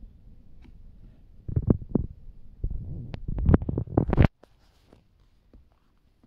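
Handling noise from a phone held against a plastic enclosure: low rumbling with a run of knocks and clicks, loudest in the second half, cutting off suddenly about four seconds in.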